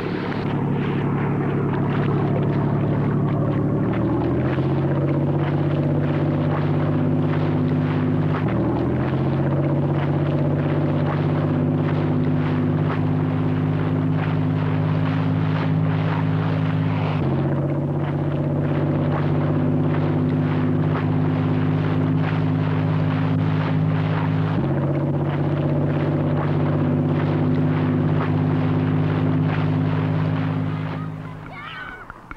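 Boat engine running steadily under way as a seine net pays out over the stern. Its pitch shifts abruptly a few times, about four, eight, seventeen and twenty-five seconds in.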